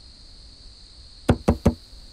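Three quick knocks on a wooden door, a little over a second in.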